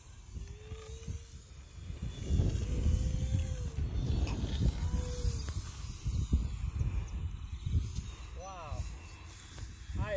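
Gusty wind rumbling on the microphone, with the faint whine of a small radio-controlled plane's motor and propeller rising and falling in pitch as it flies past overhead.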